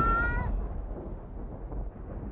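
The tail of a spooky intro sting: a short, high, gliding animal-like cry in the first half second, then a low rumble that fades away steadily.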